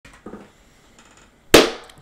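A single loud hand clap about one and a half seconds in, ringing out briefly in a small room.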